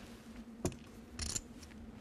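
Poker chips clicking against each other: one sharp click about half a second in, then a short, quick clatter a little past one second.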